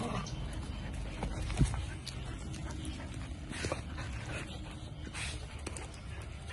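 Dogs playing and scuffling, with short dog vocalizations. A single sharp thump comes about a second and a half in.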